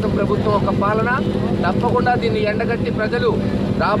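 A man speaking in Telugu, addressing the press, over a steady low hum.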